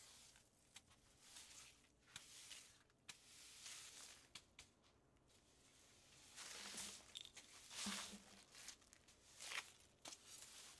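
Faint, scratchy swishes of a broom sweeping dry dead leaves and dirt across a concrete floor. The strokes are irregular and louder in the second half.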